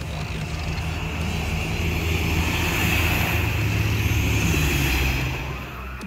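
Diesel multiple unit (Siemens Desiro type) pulling out of the station, its engine running steadily and growing louder to a peak in the middle, then falling away about five seconds in.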